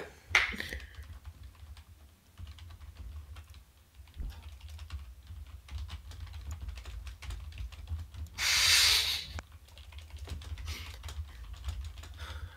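Computer keyboard typing: scattered light key clicks over a low steady hum. A one-second burst of hiss about eight seconds in is the loudest sound.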